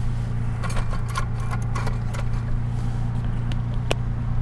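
Pickup truck engine idling steadily, heard from inside the cab as a low even hum. A few light clicks come over it, the sharpest just before the end.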